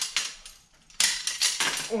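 Steel Bridger #5 coil-spring beaver trap and its steel setters clinking as they are handled on a workbench: a couple of light clicks at first, then a louder clatter of metal from about a second in.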